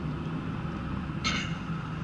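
Road vehicle running at low speed: a steady low engine and road hum, with a short hiss about a second and a quarter in.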